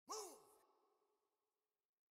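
A single short vocal sigh or cry from an isolated male lead vocal, falling steeply in pitch with a breathy hiss, then fading out over about a second and a half.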